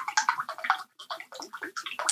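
A person gulping down a drink from a plastic tumbler, a quick, irregular run of swallows and liquid sounds close to the microphone.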